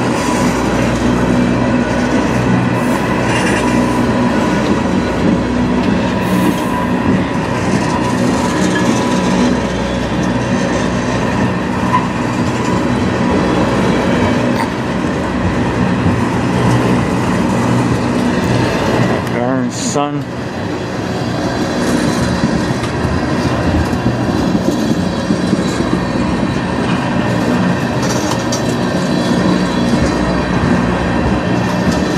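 Tank cars of a freight train rolling past close by: a steady rumble and clatter of steel wheels on the rails, with a faint steady whine underneath.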